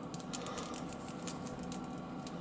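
Faint, scattered light clicks of fingers working the plastic knee ball joint of a Masters of the Universe Origins Man-E-Faces action figure, over a steady low hum.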